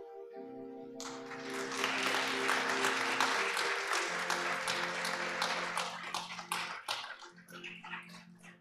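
Sustained soft keyboard chords, with a burst of clapping from the congregation about a second in. The clapping thins out into scattered claps near the end.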